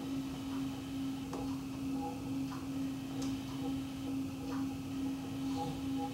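Electric potter's wheel running with a steady motor hum, with a few faint clicks as wet hands work the clay on the spinning wheel head.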